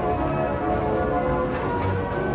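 Carousel music playing as the ride turns: a run of held, chiming notes.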